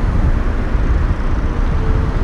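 Road traffic: cars driving past on a city street, heard as a steady, loud, low rumble with a hiss of tyres above it.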